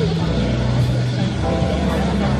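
Indistinct voices in a café over a low, steady hum.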